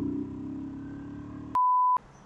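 Faint motorcycle engine and ride noise for about a second and a half, then a single steady, high electronic bleep of under half a second that blanks out all other sound. It is an edited-in censor bleep.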